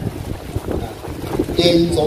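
Low rumbling wind noise on an outdoor microphone during a pause in a sermon, then a man's voice resumes speaking Thai about a second and a half in.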